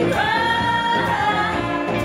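Live band with several women's voices singing together, holding one long note for about the first second and a half before moving into the next phrase.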